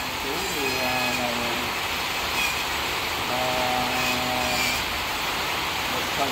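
Handheld electric rotary carving tool running against wood, a steady noisy whir with no breaks.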